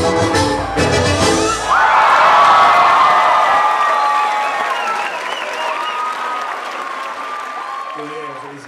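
A live band with accordion and double bass ends its piece about a second and a half in, and the crowd breaks into cheering, whistling and applause that slowly fades away.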